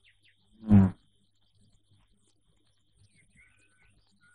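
A single short voiced sound, a brief word or exclamation falling in pitch, a little under a second in. Then a hush with faint bird chirps about three seconds in.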